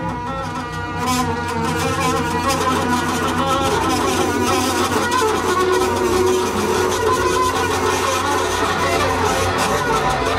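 Free-improvised jazz: two double basses played with the bow and a saxophone, a dense cluster of long held notes that swells louder about a second in.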